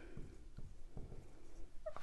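Faint strokes of a dry-erase marker writing on a whiteboard.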